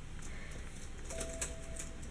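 Quiet room tone with a few faint light clicks and taps, and a faint thin steady tone in the second half.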